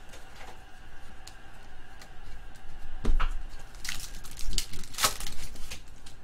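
Topps trading cards being shuffled through by hand, the cards sliding and flicking against each other. It is faint at first, then comes in several short, sharp rasps from about halfway in, the loudest shortly before the end.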